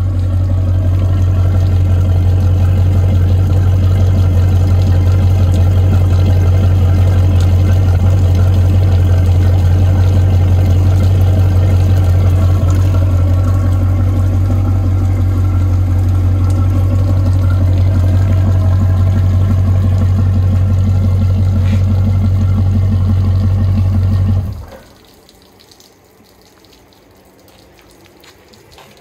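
Boat's inboard V8 engine idling steadily on the trailer with water and pink antifreeze splashing out of its exhaust as it draws antifreeze through the cooling system for winterization. It shuts off suddenly about 24 seconds in, once the five gallons have run through, leaving only faint dripping.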